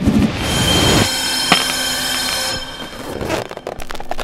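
A harsh, loud screech with several steady high ringing tones over a noisy hiss, cutting off about two and a half seconds in, with a sharp click in the middle of it. Quieter noise and scattered clicks follow.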